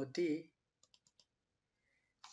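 A voice trails off, then three faint, quick computer keyboard key clicks about a second in, as a formula is typed into a spreadsheet cell.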